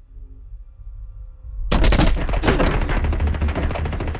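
A sudden burst of rapid automatic gunfire bursts in a little under two seconds in, cutting through a low rumble, with action music and a heavy low bass carrying on beneath.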